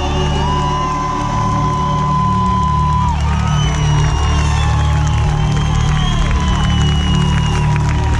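A live band playing a bass-heavy groove with long held, gliding high tones over it, and an audience cheering.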